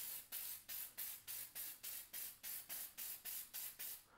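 Aerosol can of Mod Podge clear acrylic sealer spraying in short hissing pulses, about four a second, and stopping at the end.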